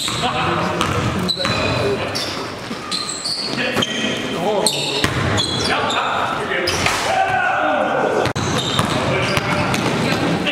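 Basketball game sound in an echoing gym: a basketball being dribbled on the court floor with repeated sharp bounces, mixed with players' voices calling out.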